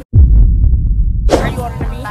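A brief cut-out, then a loud, deep bass boom lasting about a second: an edited-in transition sound effect over a black screen. A voice starts just after it.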